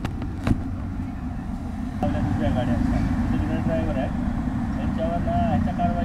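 Steady low rumble of road traffic, with a car passing. From about two seconds in it grows louder, and indistinct voices of people talking come in over it.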